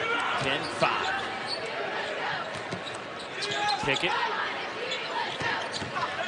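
A basketball being dribbled on a hardwood court, with sharp bounces heard over the steady hum of an arena crowd.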